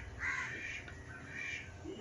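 Faint bird calls in the background, a couple of short calls in the first second and a half.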